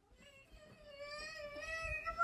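A cat's long drawn-out yowl, one sustained wavering call that starts faint and grows louder.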